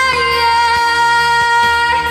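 A woman singing a long held note over a pop-ballad backing track, the note steady with slight waver, dipping a little in pitch just after it begins.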